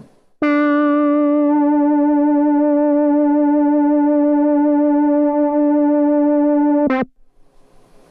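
A monophonic analog synth note from a Moog moogerfooger MF-107 FreqBox oscillator, gated through an MF-101 Lowpass Filter. One mid-range note is held steady for about six seconds, with a slight wobble in its upper overtones. It briefly flickers and brightens just before it cuts off about seven seconds in.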